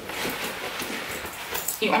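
Leather biker jacket rustling as it is swung up and pulled on over the shoulders, with a few light clicks.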